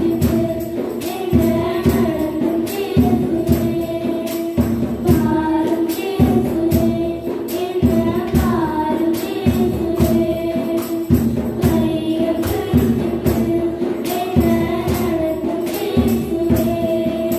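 Two girls singing a Tamil Christian worship song in unison into microphones, over accompanying music with a steady beat.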